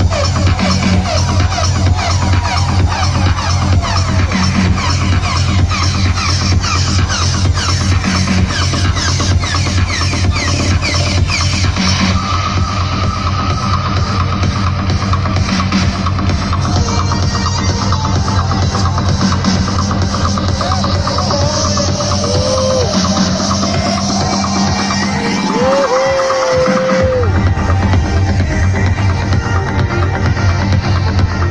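Electronic dance music from a live DJ set played loud over a festival PA, with a steady heavy kick beat. A rising sweep builds in the second half, the bass drops out for about two seconds near the end, and then the beat comes back in.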